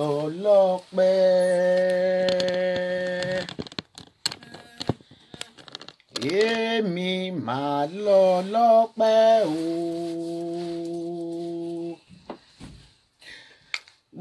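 A woman's solo voice singing a chant-like melody: gliding phrases, with one long held note about a second in and another near the end, and a pause with a few clicks midway.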